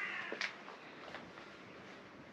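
A short, high, slightly falling animal cry at the very start, followed by faint footsteps on the lane.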